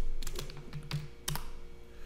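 Computer keyboard keys being tapped: a handful of irregular clicks, each with a short dull thud.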